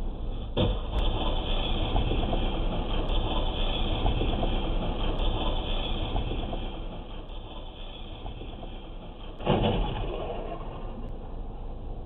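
Steady rumble of a moving road vehicle, with a sudden louder surge about nine and a half seconds in.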